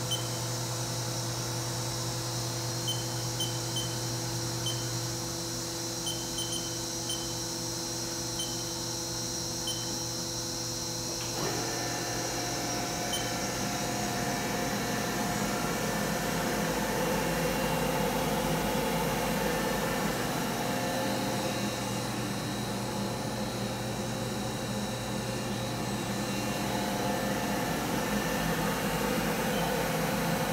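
Powered-up Haas VF-1B CNC vertical mill humming steadily, with a few faint high chirps. About a third of the way in the sound changes abruptly to a fuller, rougher whir that swells a little louder.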